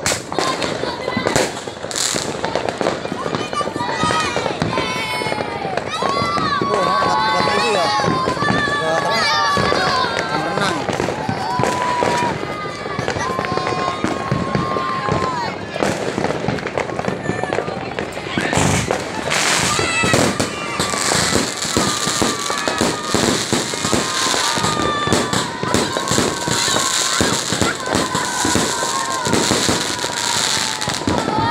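New Year's fireworks and firecrackers going off in a dense, continuous stream of bangs and pops. The crackling grows stronger over the second half.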